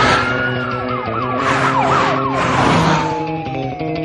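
A siren wailing and then yelping in quick sweeps, its pitch falling steadily in the last two seconds as it passes. Whooshes of vehicles racing by come through at intervals, over music.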